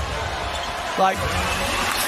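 Steady arena crowd noise during an NBA game, with low thuds of a basketball bouncing on the hardwood court.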